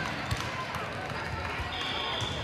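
Ambience of a busy multi-court volleyball hall: indistinct chatter from players and spectators, with scattered thuds of volleyballs being hit and bounced. A brief high steady tone comes in near the end.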